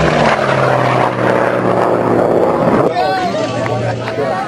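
Piston-engined Unlimited-class air racer flying past: a steady propeller and engine drone that has just dropped in pitch after the pass and holds low as the plane moves away. Voices come in near the end.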